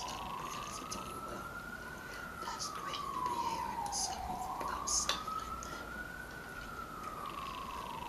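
A siren wailing, its pitch slowly rising and falling about once every four seconds, twice over, with a few sharp clicks around the middle.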